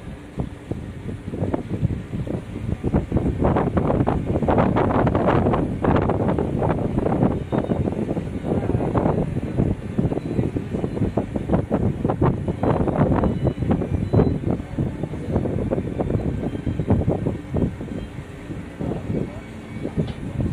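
Wind buffeting the microphone aboard a moving river tour boat, over the boat's steady low running noise, with indistinct talk of people aboard.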